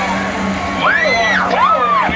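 A spectator whooping: two long shouts that rise and fall, starting about a second in, the second lower than the first. Crowd chatter and a steady low hum run underneath.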